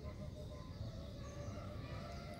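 Faint distant bird calls, chicken-like, over a low outdoor rumble.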